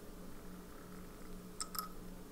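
Two faint, quick ticks near the end as a plastic pipette tip knocks against the glass of a nearly empty ink bottle, over a steady low hum.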